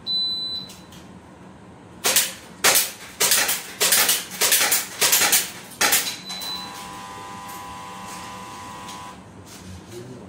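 Shot timer's short high start beep, then two airsoft gas pistols firing rapidly at plate targets: about eight loud clusters of sharp cracks over some four seconds. A lower electronic buzzer then sounds for about two and a half seconds, marking the end of the 6-second string.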